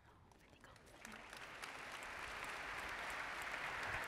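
Audience applause in a large hall. It starts faint about a second in and swells steadily.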